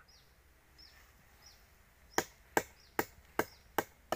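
Five sharp knocks on the wood of an agarwood tree trunk, evenly spaced at about two and a half a second, beginning about halfway in.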